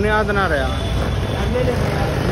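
A man talking, over a steady low rumble of street traffic.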